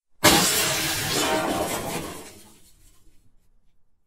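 A sudden crash sound effect, noisy across the whole range, that fades away over about two and a half seconds: an edited-in transition effect leading into the channel's logo intro.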